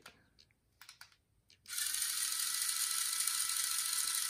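Small retraction motor of a NECA 1989 Batman grapnel launcher replica whirring steadily, after a few light clicks, starting a little under halfway in. The string is not retracting, which the owner takes for a broken mechanism.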